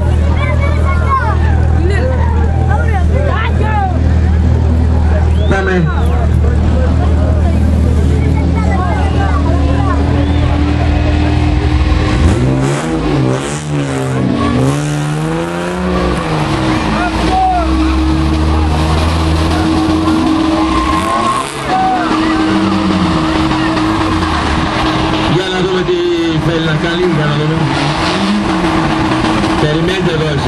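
Drift car engine running steadily for the first dozen seconds, then revved hard up and down over and over as the car slides, with tyres squealing.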